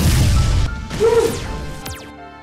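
A lightning-strike sound effect: a sudden loud crackling crash lasting about a second. It is followed by a short cry and a fast falling swoosh near the end, over film score music.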